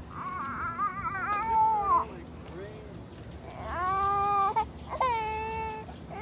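A young child crying in three long, high wails, the first wavering and dropping at its end, the last held steady.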